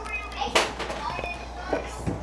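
Children's voices in the background, with a sharp kitchen clack about half a second in.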